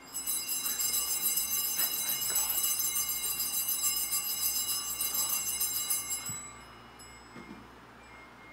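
Altar bells shaken in a continuous bright, high jingling ring at the elevation of the chalice during the consecration, stopping about six and a half seconds in.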